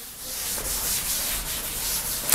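A cloth wiping chalk off a chalkboard: a continuous dry rubbing against the board as the writing is erased.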